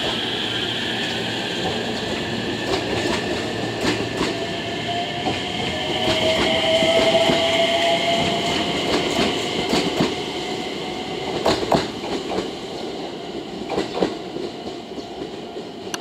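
JR West 227 series electric train pulling out of a station and running past: its electric traction motors give a steady whine with a tone that rises about a third of the way in as it gathers speed. The wheels clack over rail joints several times in the second half as the last cars go by and the sound fades.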